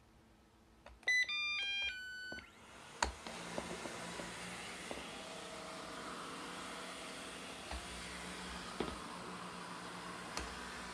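Robot vacuum cleaner starting up: a quick run of electronic beeps at stepping pitches about a second in, then its motor and brushes start and run with a steady whir, with a few light knocks.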